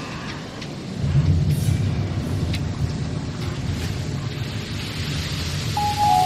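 Street ambience dominated by wind rumbling and buffeting on the camera microphone, with a few faint clicks. Near the end, steady musical tones come in.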